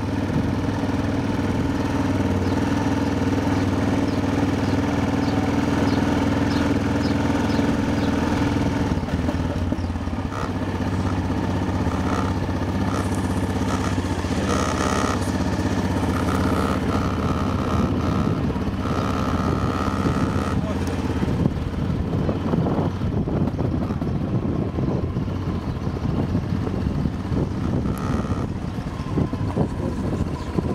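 Motorcycle engine running steadily at low road speed, heard from the rider's seat, with irregular low rumbling noise taking over in the second half.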